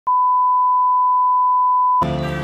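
One steady electronic beep: a single pure tone at one pitch, held for nearly two seconds and cutting off suddenly.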